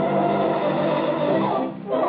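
Orchestral cartoon score holding sustained chords, breaking off briefly near the end.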